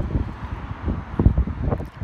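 Wind buffeting the microphone: an uneven, gusty low rumble, strongest a little past the middle.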